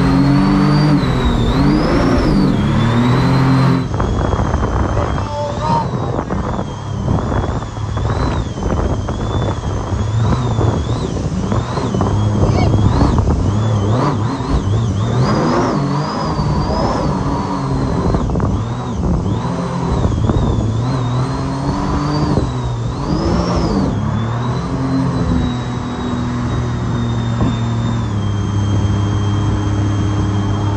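Supercharged mini jet boat engine running on the river, its pitch rising and falling repeatedly as the throttle is worked, with a high supercharger whine that rises and falls along with it. Water rushes and splashes underneath, and the engine settles to a steadier pitch near the end.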